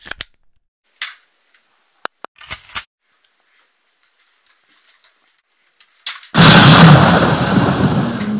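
A few light clicks and knocks, then about six seconds in a single very loud gunshot-like blast that rings on and slowly fades.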